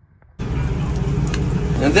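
Steady low rumble of commercial-kitchen background noise, such as a hood fan and grill equipment, that cuts in abruptly about half a second in after a brief quiet moment.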